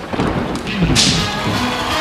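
Deep booming thuds, with a sharp hissing blast about a second in as a confetti cannon fires; music starts up near the end.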